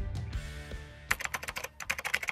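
Background music fades out, then rapid keyboard typing clicks begin about a second in: a typing sound effect as on-screen text is typed out letter by letter.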